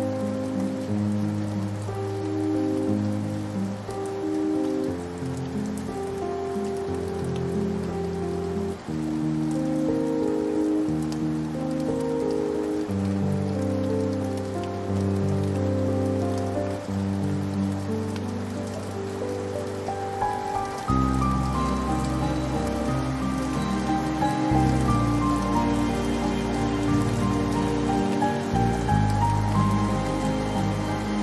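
Slow, sad piano music over a steady rain sound, its notes held a second or two each. About two-thirds of the way through, deeper bass notes and higher notes come in and the music grows fuller.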